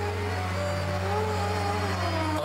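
Dance accompaniment music in Carnatic style: a deep note held steady beneath a gliding melody line.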